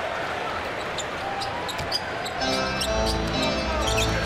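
Basketball game sound from the court: ball bounces and short high sneaker squeaks over steady arena crowd noise. About two and a half seconds in, arena music with a heavy bass line starts up.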